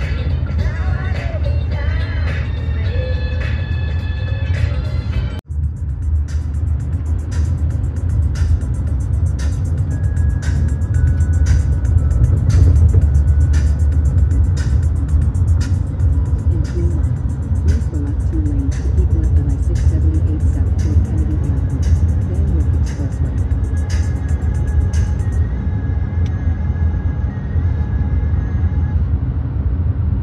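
Steady low road and engine rumble inside a moving car's cabin, with music playing over it. About five seconds in the sound briefly cuts out, then the music goes on with a regular beat of sharp ticks.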